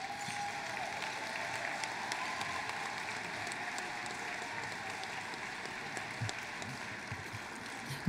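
Audience applauding, steady and fairly quiet, easing off slightly near the end.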